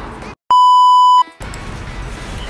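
A single loud electronic beep at one steady pitch, lasting under a second, set in during an edit like a censor bleep. It cuts in sharply after the background music drops out, and stops just as sharply.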